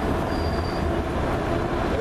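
Steady low rumble of street traffic, with a faint high-pitched squeal that comes and goes twice.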